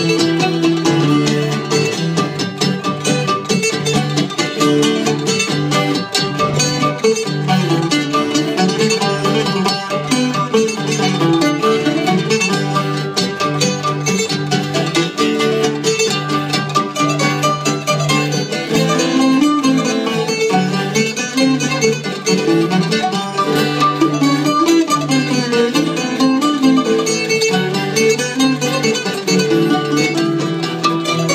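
Live acoustic string trio playing an instrumental piece: an acoustic guitar and two plucked lutes, one small and one long-necked, with a dense run of plucked notes over a sustained low bass.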